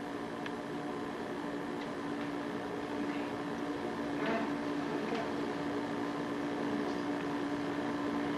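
Steady background hum with a single held tone and an even hiss, the room tone of an old videotape recording. A faint brief sound comes about four seconds in and again a second later.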